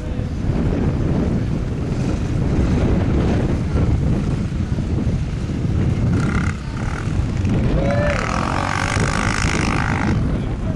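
Dual-sport dirt bike engine running at low speed, heavily buffeted by wind on the microphone.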